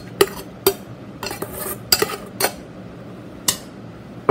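Stainless steel container knocking against the rim of a steel mixer-grinder jar as leftover rice is tipped out into it. There are about seven sharp metallic taps, irregular and roughly half a second apart, with a longer gap before the last one.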